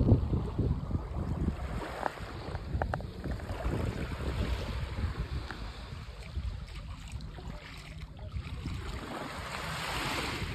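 Small waves lapping on a sandy beach, with wind noise on the microphone throughout. A wave washes up on the sand with a brighter hiss near the end.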